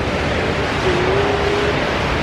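Steady wash of background noise in a large, busy indoor hall, with a faint drawn-out voice about halfway through.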